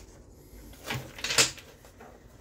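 A deck of tarot cards being handled in the hand: two short bursts of card noise about half a second apart, the second sharper and louder.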